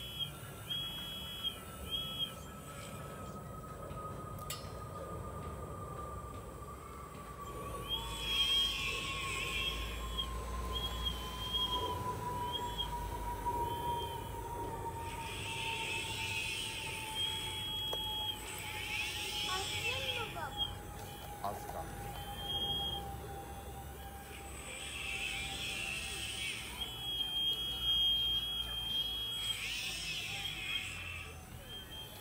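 Electric motors of a radio-controlled model excavator, a Liebherr R960 replica, whining in short stop-start runs at a few fixed pitches as the boom, arm and bucket move while it digs soil. Heavier stretches of motor noise come at several points. Beneath them runs a faint tone that slowly falls in pitch.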